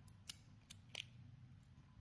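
Faint snips of small hand pliers-cutters working at a USB cable's shielding: three light clicks, the clearest about a second in.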